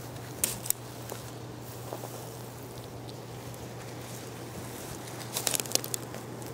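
Dry grass and dead leaves crackling as they are stepped through: two sharp crackles about half a second in and a quick run of crackles near the end.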